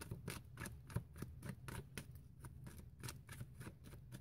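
A tarot deck being overhand-shuffled in the hands: a faint, irregular run of soft card clicks and slaps, about four a second.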